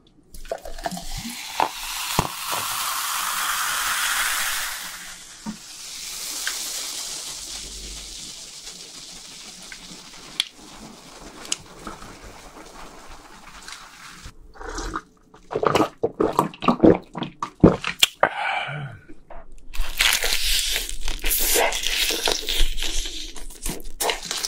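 Cola poured from a plastic bottle into a glass, the pour rising in pitch as the glass fills, then a long fading fizz of foam as the pouring goes on slowly. In the last third, loud close-up crunching and mouth sounds of eating fried chicken.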